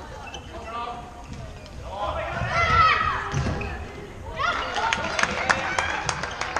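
Players' voices calling across a large sports hall, then from about four seconds in a rapid run of sharp clacks of floorball sticks and the plastic ball as play restarts.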